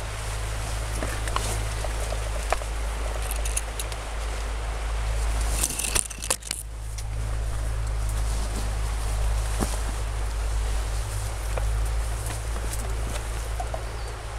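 Rustling and brushing through dense rhododendron undergrowth: leaves and branches swishing, the protective suit's fabric rubbing, and scattered twig cracks and footsteps, over a steady low rumble. A louder burst of rustling comes about six seconds in.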